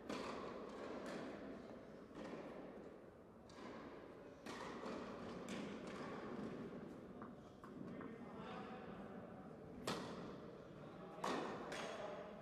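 Faint room noise of an indoor tennis hall between points, with two short sharp thumps about ten and eleven seconds in.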